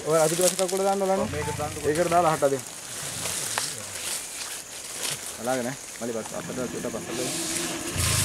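Men talking, loudest in the first two and a half seconds, then quieter fragments of talk over scattered faint crackles and clicks.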